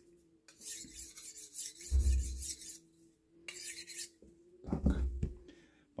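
A steel knife blade stroked across a wet natural sandstone rock used as a whetstone: gritty scraping in a run of strokes, a pause, then a shorter stroke.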